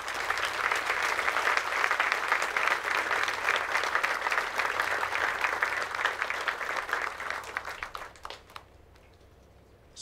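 Audience applauding: dense clapping that thins out and dies away about eight seconds in.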